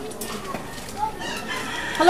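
A rooster crowing faintly, heard as short pitched calls about a second in and again near the end.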